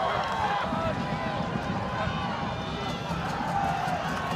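Crowd of football spectators in the stands, many voices talking and shouting over each other at a steady level.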